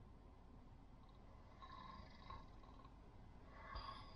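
Faint snoring over near silence: slow snores about every two and a half seconds.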